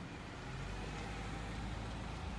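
Low, steady rumble of street traffic passing.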